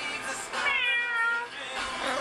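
A single meow, falling in pitch, about a second long, starting about half a second in, over faint background music.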